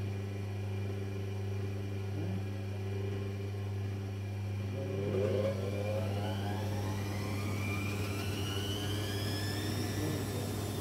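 Servis-built Electra Microelectronic 900 6950E washing machine with a steady low hum of its drain pump; about halfway through, its drum motor starts to speed up, a whine rising steadily in pitch to the end as the machine ramps into a spin.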